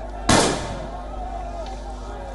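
A rifle volley fired by a guard of honour in salute: one sharp, loud crack about a third of a second in, with a short echoing tail.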